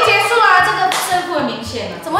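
Women talking over background music with a steady, pulsing bass line.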